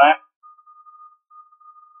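A faint, steady high-pitched tone that keeps breaking off and starting again.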